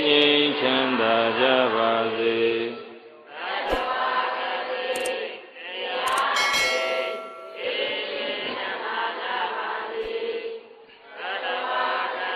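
Buddhist devotional chanting, a recitation of long notes held on steady pitches. A brief ringing tone sounds about halfway through.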